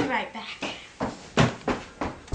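A girl's brief wordless voice, then a quick run of thumping footsteps on a wooden floor, about three steps a second.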